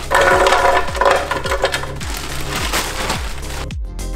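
Frozen berries poured from a bag, clattering into a plastic Ninja blender jar for the first couple of seconds, over electronic background music with a steady beat of about two kicks a second.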